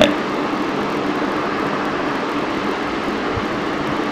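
Steady, even background hiss with a faint low hum underneath, unchanging throughout.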